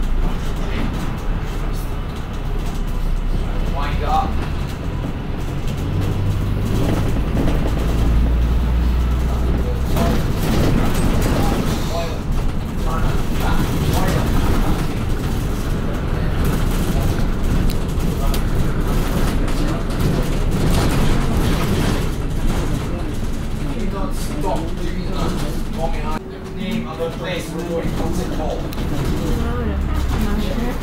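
Ride noise inside a London double-decker bus on the move: a steady low engine and road rumble that swells for a few seconds about a quarter of the way in, with passengers' voices coming and going.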